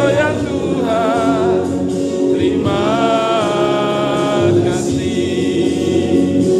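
A group of people singing a song together in chorus, with accompanying music underneath.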